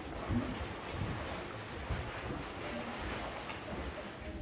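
Indistinct background noise of people in a workshop: faint voices in the distance, with rustling and low knocks throughout.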